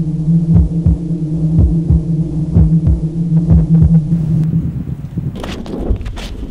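A low, steady electronic drone with pairs of low thuds about once a second, like a heartbeat, as a horror sound effect; it fades out about four and a half seconds in. Near the end, crackling footsteps and rustling over wind noise on the microphone take over.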